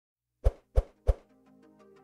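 Three sharp plop-like hits about a third of a second apart, then soft musical tones coming in: the opening sound effects of an intro jingle.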